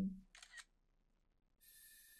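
Faint camera shutter sound effect from the anime as a picture is taken, starting about a second and a half in and lasting about a second, with a steady high tone.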